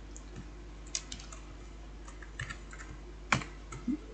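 Scattered keystrokes on a computer keyboard: a few soft, irregular taps and one sharper key press a little over three seconds in, over a steady low hum.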